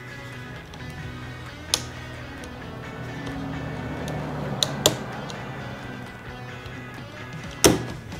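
Background music, with a few sharp plastic clicks from a screwdriver working the retaining tabs of a push-start button bezel on a truck's center-console trim panel. There is one click about two seconds in, two close together near the middle, and the loudest near the end.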